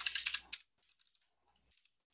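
Computer keyboard typing: a quick run of keystrokes for about the first half second, then cut off abruptly into near silence.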